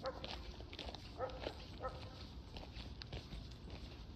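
A dog barking faintly, three short barks: one at the start, then two more between one and two seconds in.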